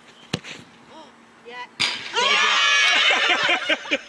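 A football kicked hard, with a sharp knock just under two seconds later, followed by a group of women shrieking and cheering loudly for about two seconds.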